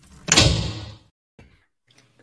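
A single heavy slam-like impact that dies away over about half a second.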